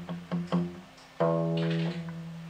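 Acoustic guitar: three quick plucked notes at the start, then one strum about a second in that is left ringing. The low E string is muted by the fretting-hand thumb resting against it.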